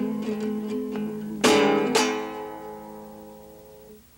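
Acoustic guitar being fingerpicked. It closes the piece with two loud strummed chords about a second and a half and two seconds in, which ring on and slowly fade away.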